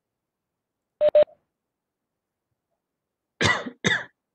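Two short beeps in quick succession about a second in, then a person coughing twice near the end.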